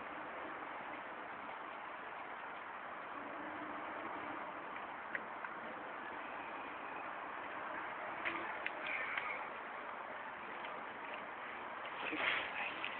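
A dog picking and chewing blackberries off a bramble: a sharp click about five seconds in and a quick run of small clicks and smacks around eight to nine seconds, over a steady hiss.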